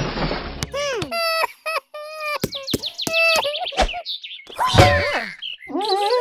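High-pitched, squeaky cartoon-character voice crying out in short, bending bursts, after a splashing noise at the start. A sudden thud comes about five seconds in, and a wavering, rising cry begins near the end.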